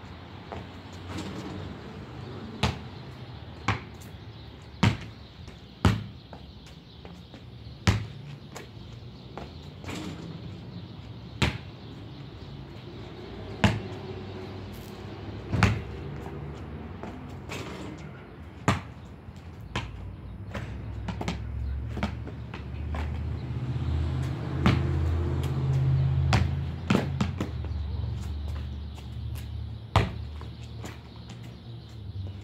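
Basketball bouncing on a concrete driveway: single sharp bounces about one to two seconds apart. A low rumble builds in the second half.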